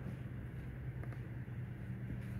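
Room tone in a hall: a steady low hum with faint background hiss, no speech.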